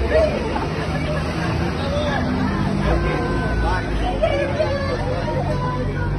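Several people talking at once on a city street, over a steady low hum of road traffic.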